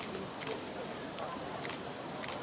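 A few camera shutters clicking, short sharp clicks about half a second, a second and a bit, and near the end, over a low murmur of crowd chatter.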